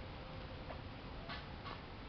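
Two short clicks about a second and a half in, over a steady outdoor background hiss.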